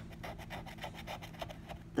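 A metal scratcher scraping the latex coating off a paper scratch-off lottery ticket in quick, short, repeated strokes.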